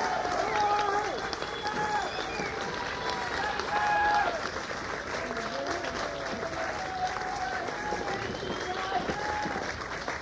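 Festival crowd between songs: many voices talking and calling out at once, with scattered handclaps.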